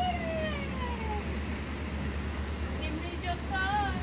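Steady low traffic rumble with a siren wail that slides down in pitch over the first second, then a few short higher tones near the end.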